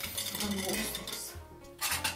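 Metal bar spoon and ice rattling and scraping against a glass, with sharper clinks near the end.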